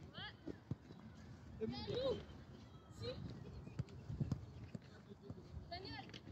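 Children's voices shouting and calling out across a football pitch in short high-pitched calls, with a few sharp thuds of a football being kicked.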